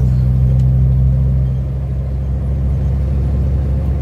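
Tow truck's diesel engine running while driving, heard from inside the cab as a steady low drone that eases slightly about a second and a half in.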